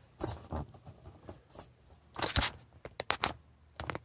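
Light handling noise: a few soft clicks and rustles of cables and the coiled kill-switch lanyard being moved by hand, most of them between two and three and a half seconds in.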